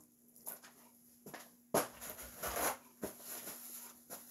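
Hands being dried on a paper towel: faint rustling with a few light clicks, the sharpest just under two seconds in, over a low steady hum.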